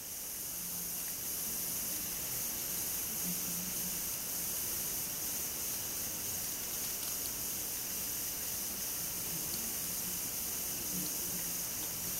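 Steady background hiss of the recording with a faint low hum coming and going; the wooden needles and yarn make no distinct clicks.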